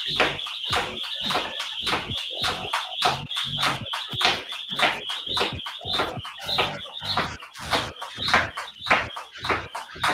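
Jump rope skipping: the rope slapping the floor in a quick, even rhythm of about three strikes a second, over a steady high whir.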